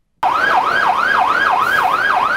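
Electronic emergency-vehicle siren in a fast yelp, starting abruptly a moment in. Its pitch sweeps up and down about four times a second.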